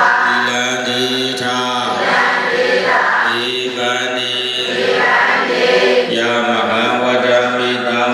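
Buddhist devotional chanting by voices holding long steady notes, in phrases of a second or two with short breaks between them.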